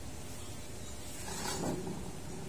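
Steady background hiss with no distinct event, and a faint brief rustle or breath-like noise about one and a half seconds in.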